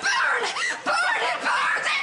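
Studio audience laughing.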